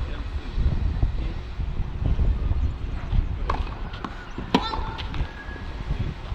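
Wind rumbling steadily on the microphone, with brief distant voices about three and a half and four and a half seconds in.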